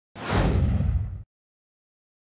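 An editing whoosh sound effect with a deep low rumble beneath it, lasting about a second: its hiss falls in pitch, and it cuts off abruptly.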